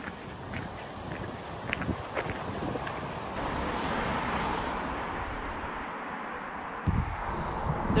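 Wind rushing over the microphone outdoors, a steady noise with a sharp click about seven seconds in, after which a heavier low rumble of wind buffeting sets in.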